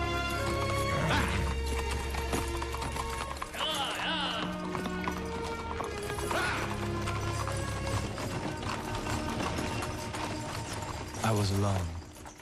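Horses' hooves clip-clopping under a film score of sustained tones, with horses whinnying about a second in, at about four seconds and at about six and a half seconds.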